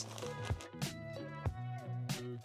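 Background music with steady held notes over a regular beat.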